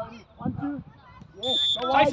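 One short, steady whistle blast lasting about a third of a second, about three quarters of the way through, then a man's shouting voice.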